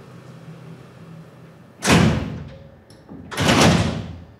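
Heavy steel bunker door being shut: two loud bangs, about two seconds and three and a half seconds in, each ringing away in the hard corridor.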